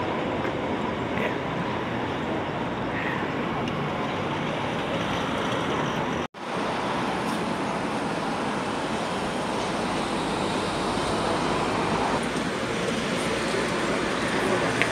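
Steady city street traffic noise. About six seconds in it drops out for a moment at an edit cut, then carries on.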